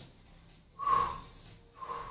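A woman takes two short, audible breaths, about a second apart, while holding a cobra-pose back stretch.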